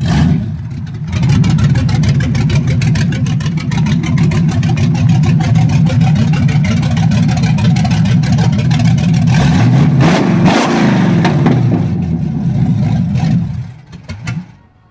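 1972 Chevy Nova's 350 small-block V8 running loudly with a rapid, even exhaust pulse. The engine is revved once, up and back down, about ten seconds in, and cuts off near the end.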